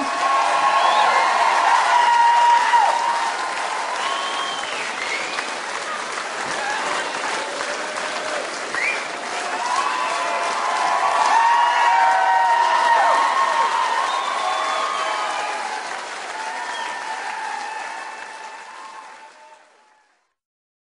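Large concert audience applauding and cheering. The clapping swells twice and fades out near the end.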